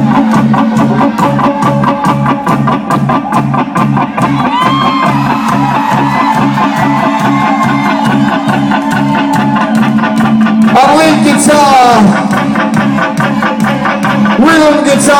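Live rock band playing a steady vamp: drums and bass keep a regular repeating beat while an electric guitar plays a lead line with bent, gliding notes, which swell into a louder wavering run near the end.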